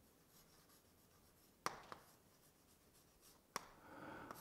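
Faint chalk writing on a blackboard: soft strokes with a few sharp taps of the chalk, a pair about a second and a half in and one more near the end.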